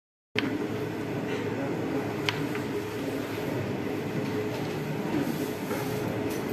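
Steady classroom room noise: a constant hum with a sharp click just after the sound begins and another a little after two seconds in.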